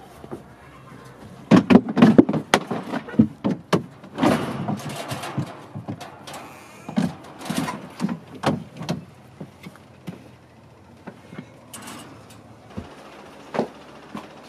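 A window being slid open and someone climbing in through it: a clatter of knocks, bumps and sliding scrapes, loudest in the first few seconds, then softer scattered knocks, with a couple of last taps near the end.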